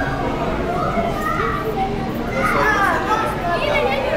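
Many children chattering and calling out at once, their voices overlapping into a steady babble.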